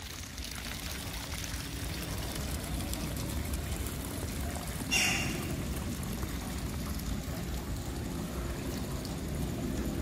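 Rainwater runoff pouring and trickling steadily into a pond, with one brief sharper sound about five seconds in.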